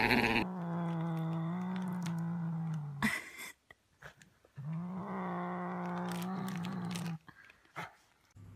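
Tabby house cat growling with its mouth clamped on a food package as a hand pulls at it: two long, low, steady growls of about two and a half seconds each, with a short gap between them. This is a cat guarding its food.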